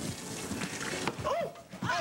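A person's high-pitched squeals: short cries that rise and fall in pitch, coming in the second half.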